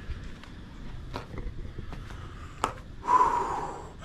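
A man breathing heavily, out of breath from climbing many flights of steep stairs, with a loud breath about three seconds in and a few light clicks.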